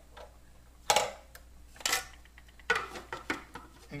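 Hard plastic parts of a Bosch food processor clattering and clicking as the slicing disc is turned over on its spindle and the lid is fitted onto the bowl. Several sharp knocks, the loudest about a second in; the motor is not running.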